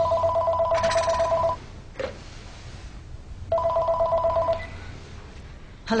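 A telephone ringing twice, each ring a two-tone warbling trill about a second long with a pause between them.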